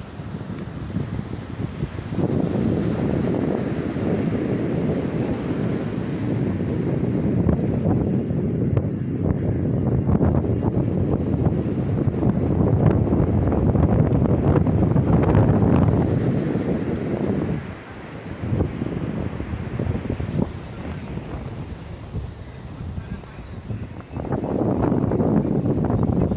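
Strong wind buffeting a phone's microphone in gusts, loudest through the middle and easing off for a few seconds after about 18 s, over the wash of surf breaking on a sandy beach.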